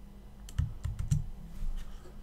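Computer keyboard keystrokes: about half a dozen irregular clicks with dull thuds, in a short burst.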